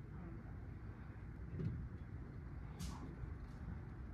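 Faint outdoor background ambience: a steady low rumble, with a brief soft hiss about three seconds in.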